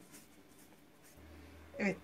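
Faint soft strokes of a silicone pastry brush spreading oil over halved eggplants on a parchment-lined baking tray. A faint low hum begins a little past a second in.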